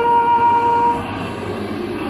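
A bugle sounding the slow call for a moment of silence, in long-held single notes. A held higher note fades about a second in, and a lower note slides upward near the end.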